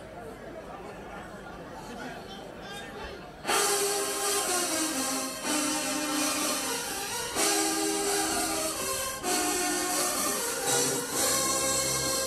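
Background crowd murmur, then about three and a half seconds in a marching band's brass section suddenly strikes up loud, playing held chords that change every half second or so. Low tuba notes come in near the end.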